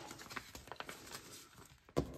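Soft rustling and small clicks of crisp paper banknotes and a frosted plastic binder envelope being handled, with a sharper click at the very end.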